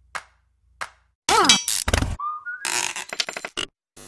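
A quick run of transition sound effects after a near-silent first second: a short vocal 'ah' falling in pitch, a thump, a brief tone sliding upward, then a clatter of clicks.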